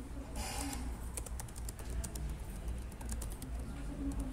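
Typing on a computer keyboard: a quick run of keystroke clicks from about a second in, with a short hiss just before the typing starts, over a low steady hum.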